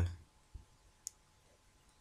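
Two faint clicks from a computer pointing device over quiet room tone: a soft knock about half a second in and a sharper click about a second in.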